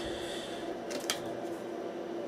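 Plastic Blu-ray case and a tight-fitting paper insert being handled and worked loose, with light scraping and two sharp clicks about a second in.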